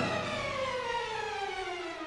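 Symphony orchestra playing: a sustained pitched line glides steadily downward and fades just after a loud passage.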